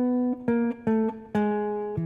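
PRS electric guitar played clean: a descending run of about five single picked notes, each a step lower than the last, ending on a held note.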